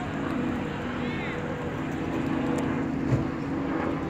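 City bus diesel engine idling close by, a steady hum, with a single thump about three seconds in.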